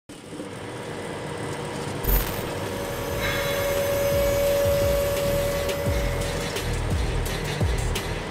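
Title-sequence music with a deep rumble underneath, fading in from silence, with a sharp hit about two seconds in and a long held note through the middle.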